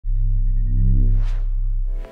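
Electronic intro sting: a deep, steady bass drone with a faint rapid beeping in the first second and a swoosh that rises and falls about a second and a half in.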